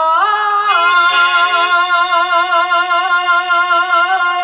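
A single voice holding one long sung note with a steady vibrato, stepping up slightly near the start, in the musical opening of a Bhojpuri birha.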